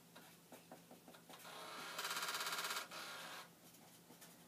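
Commodore floppy disk drive trying to initialize a disk: the drive runs up and the head rattles in a rapid, even burst of about fifteen knocks a second, lasting under a second, then stops. The rattle belongs to a drive that keeps failing to read the disk and is retrying the initialize.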